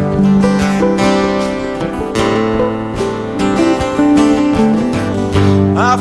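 Live folk band playing an instrumental passage between sung lines: strummed acoustic guitars over a steady beat on drums played with sticks. A voice comes in with a rising note at the very end.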